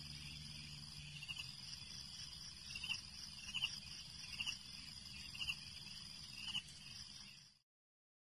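Faint, steady high-pitched insect trill with six short chirps spread over a few seconds. It cuts off suddenly near the end.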